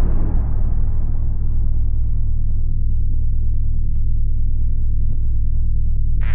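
Logo-intro sound design: the tail of a deep boom fading into a loud, steady low rumble, with a thin high steady tone coming in about two seconds in.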